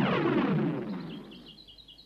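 A cartoon swoosh sound effect that falls in pitch and fades away over the first second and a half. Faint, rapid bird chirping follows.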